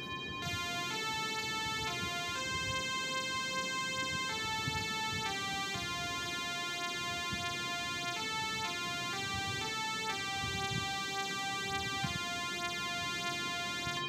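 Instrumental break in a song: a simple electronic keyboard melody of clean held notes, changing every half second or so, played softly over a faint hiss.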